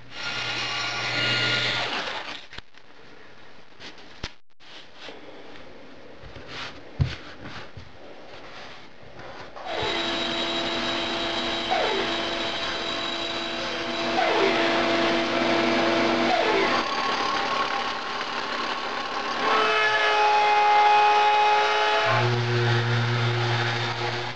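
Bandsaw running and cutting a small piece of wood: a steady motor hum with the sound of the blade, loud from about ten seconds in after a quieter stretch with a few clicks and knocks. Near the end a random orbit sander runs with a strong low hum.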